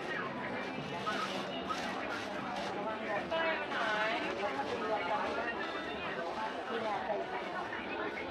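Indistinct voices and chatter of shoppers in a busy mall corridor, with one voice standing out about three to four seconds in.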